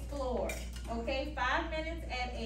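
Indistinct voices talking in short phrases, with no clear words, over a steady low hum.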